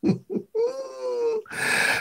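A man laughing: two short chuckles, then a drawn-out laugh held on one slowly falling pitch, ending in a breathy rush of air.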